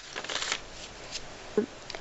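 A paper page being turned in a ring-bound folder: a rustle that is loudest in the first half second, then softer crackling as the sheet settles.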